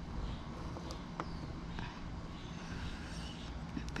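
A few faint light clicks of bamboo puzzle sticks being slid and handled, over a steady low background rumble.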